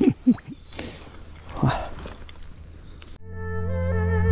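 The tail of a man's laugh, then a small bird chirping in quick runs of short high notes over the river's ambience. Music comes in suddenly about three seconds in and gets louder.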